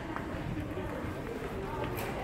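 Indistinct, low background voices over the steady ambient noise of a large retail store.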